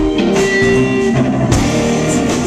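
Live rock band playing an instrumental passage: electric guitar notes ringing over a drum kit, with a loud drum hit right at the start and another about one and a half seconds in.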